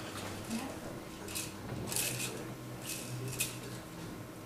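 Faint whispering, heard mostly as a few short hissing 's' sounds, over a steady low hum in the room.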